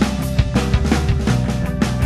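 Recorded rock music from a screamo band: electric guitars, bass and a drum kit playing together, the drums striking at a steady pulse.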